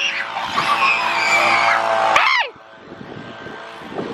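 Children shrieking and squealing in high, sweeping cries that cut off about two and a half seconds in.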